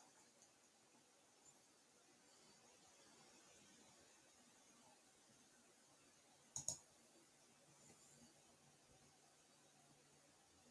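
Near silence with room tone, broken once about six and a half seconds in by two quick computer mouse clicks in close succession.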